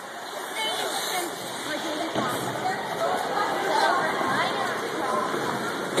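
Ice rink ambience: a steady rushing noise with faint chatter of many distant voices mixed through it.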